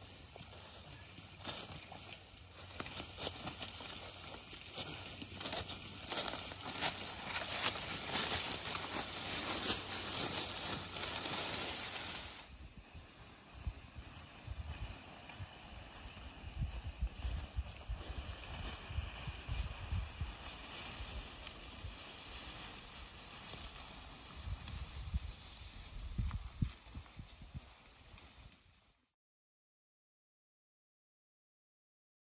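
Footsteps crunching through dry fallen leaves on a forest floor. About halfway through, the sound cuts abruptly to a quieter stretch with scattered low thumps, and it stops shortly before the end.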